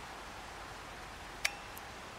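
A single sharp click from the NOCO GB40 lithium jump starter about one and a half seconds in, then a fainter click shortly after, over a steady low hiss.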